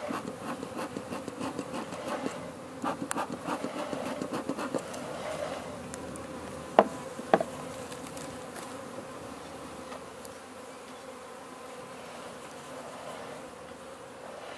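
Honeybees buzzing steadily around an open hive, with a few faint clicks about three seconds in and two sharp knocks about half a second apart near the middle.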